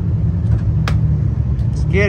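Drag race car's engine idling with a steady low rumble. A couple of sharp clicks come about half a second and a second in, and a short squeak near the end.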